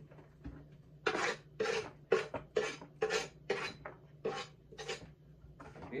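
Chopped onion, carrot and pepper scraped off a wooden cutting board into a plastic container: about ten short scrapes, roughly two a second, after a quiet first second.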